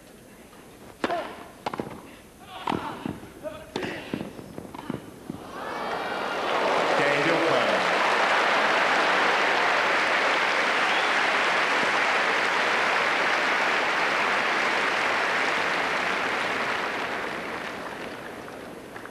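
A short tennis rally on a grass court: a serve and quick exchanges of racquet strikes and ball bounces, about eight sharp hits in four seconds. Then the crowd breaks into applause at the end of the point and game, sustained for about ten seconds and fading near the end.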